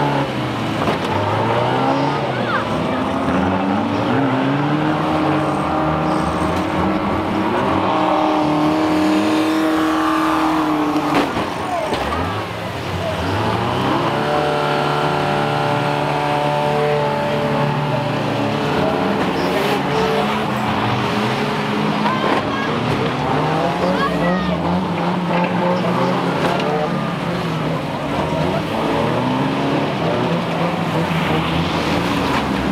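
Several banger vans' engines running and revving around a shale oval, their pitches rising and falling as they accelerate and lift off, with a single sharp bang about eleven seconds in.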